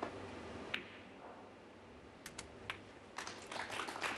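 Snooker shot: the cue tip strikes the cue ball with a sharp click about a second in, followed by a few hard clicks of the balls striking as the green is potted, then a quick run of light clicks near the end.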